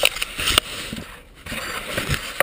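Handling noise of an action camera right at its microphone: rustling and scraping against cloth or blind material, with a sharp knock at the start and another about half a second in.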